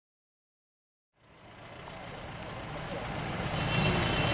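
Street traffic noise with faint voices, fading in about a second in and growing steadily louder.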